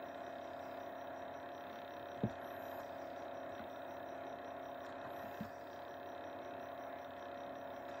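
Quiet room tone with a steady electrical hum, broken by a faint click about two seconds in and another about five seconds in.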